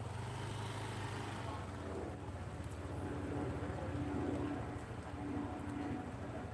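An engine running steadily, heard as a low, evenly pulsing hum. A higher drone swells and fades over the later seconds.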